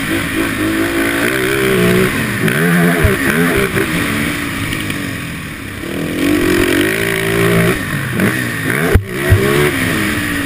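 Can-Am ATV engine revving hard and easing off again and again as it runs around a dirt motocross track, its pitch climbing and dropping with the throttle. A few sharp knocks cut in, one about three seconds in and a loud pair near the end.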